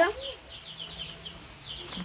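Chickens peeping in the background: a string of short, high, falling calls, several a second. A brief "uh-huh" is heard at the start.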